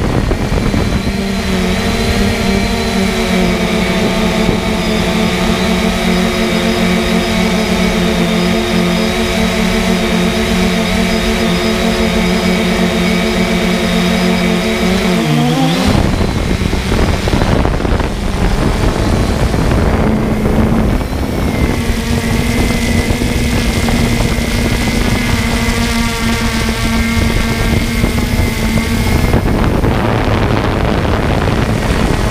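A motor humming steadily over loud rushing air noise. About halfway through, the hum's pitch rises and breaks off; a few seconds later it comes back steady.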